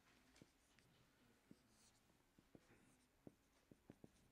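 Near silence, with the faint sound of a marker writing on a whiteboard: scattered soft taps, more of them in the second half, and a brief scratch of the pen.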